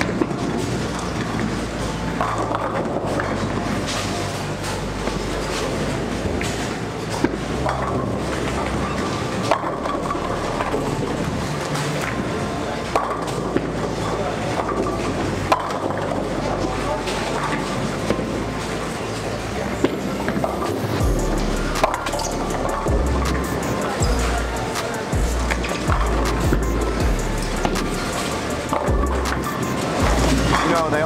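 Busy bowling-alley din: balls rolling down the lanes and pins clattering across many lanes, with sharp crashes scattered throughout over a babble of voices. Music with a heavy bass beat plays along, strongest from about two-thirds of the way in.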